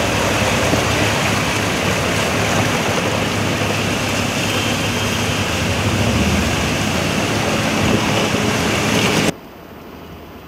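Cars driving through a flooded street: engines running and tyres churning through standing water in a steady wash of noise. About nine seconds in it cuts off suddenly, leaving a much quieter hiss.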